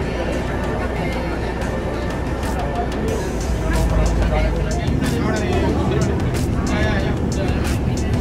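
Low, steady rumble of a shuttle bus in motion, heard from inside the passenger cabin.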